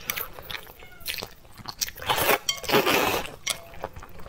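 Close-miked eating of saucy noodles: wet chewing and mouth clicks, with a louder, longer slurp of noodles from about two seconds in to just past three.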